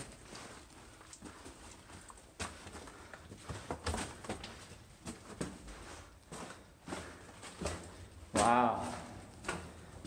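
Footsteps on the rock and rubble floor of a mine tunnel: irregular scuffs and knocks as someone walks in. A brief voice sounds about eight and a half seconds in.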